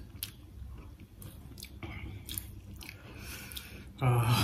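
Faint chewing of noodles, with a few light clicks of forks against plates.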